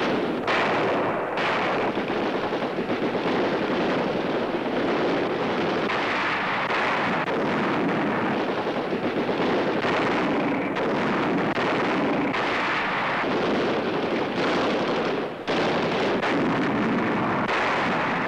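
Ship's deck guns firing in a heavy, continuous barrage, with shells bursting around a surfaced German U-boat at sea. There is a brief break in the noise about three-quarters of the way through.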